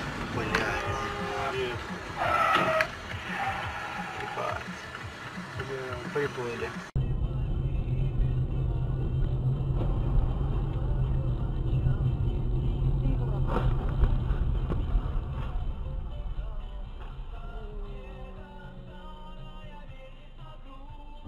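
Dash-cam audio from inside moving cars: voices at first, then after an abrupt cut about seven seconds in, a steady low rumble of engine and road noise with one brief sharp knock around the middle.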